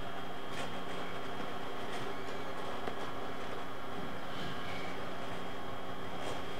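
Steady room hum with a few faint scratches of a pen drawing on paper.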